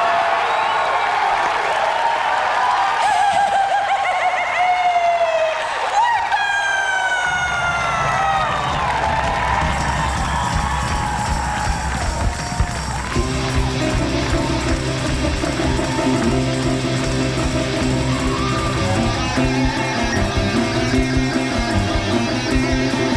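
A live rock band starting its set over audience cheering. Sliding pitched sounds fill the first several seconds, a low bass part comes in about seven seconds in, and steady keyboard chords join at about thirteen seconds.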